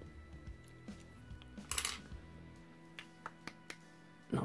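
Plastic Citadel paint pot being handled on a desk: light clicks and one short clatter a little under two seconds in, then a few small ticks near the end. Faint background music plays underneath.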